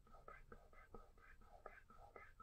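Faint, quick swishes of a fingertip rubbing pencil shading into drawing paper in small circles, about four to five strokes a second, blending the graphite.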